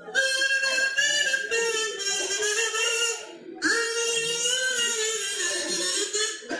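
Homemade elder-stem mirliton, a hollowed elder twig with a piece of plastic held on by an elastic band, hummed into so it gives a buzzy, reedy tone. Two long held notes with a short break just past the middle, the pitch wavering a little.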